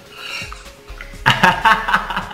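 Cutlery clinking on a plate, then a man bursting into loud laughter about a second and a quarter in.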